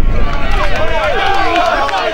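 Several voices shouting and calling out at once, footballers and spectators at the pitch, over a low wind rumble on the microphone that is strongest at the start.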